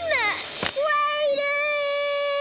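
A cartoon dinosaur character's child-like voice: a short cry that rises and falls, a brief burst of noise about two thirds of a second in, then one long held high cry as she swings on a vine.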